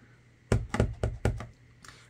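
Clear acrylic stamp block tapped on an ink pad to re-ink the stamp: a quick run of about six light knocks in roughly a second, starting about half a second in.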